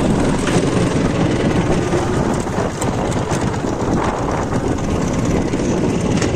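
Dnepr motorcycle's boxer-twin engine running under way over rough grassy ground, with wind noise on the microphone and scattered knocks from the bumps.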